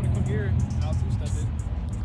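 Tuned Honda Civic with intake and downpipe, its engine running at idle with a steady low rumble, under faint voices.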